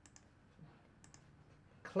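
Computer mouse button clicked a few times, faint quick ticks in pairs about a second apart, placing tracing points around a wound outline.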